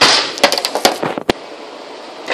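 Handling noise from the recording device as it is gripped, moved and set down: a loud rush at the start, then several sharp knocks and clicks close to the microphone over the next second and a half.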